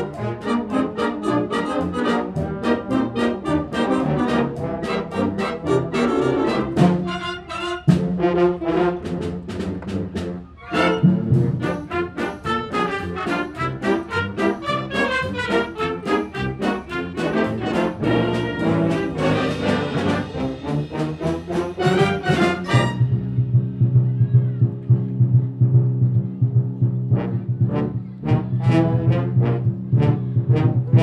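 Full concert band playing a fast, busy arrangement led by trumpets and trombones, with sharp drum and cymbal strikes throughout. About 23 seconds in, the upper parts drop out and a low brass chord is held, with percussion strikes coming back near the end.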